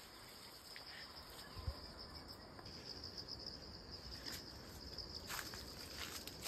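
Faint, steady high-pitched trill of insects, with a soft thump about a second and a half in and a few light rustles near the end.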